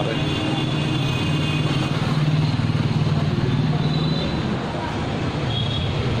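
Motorcycle engine running at low speed, a steady low hum that swells a little in the middle and eases near the end.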